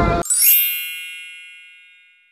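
A sparkling, bell-like chime sound effect that starts a quarter second in, rings out and fades away over about a second and a half.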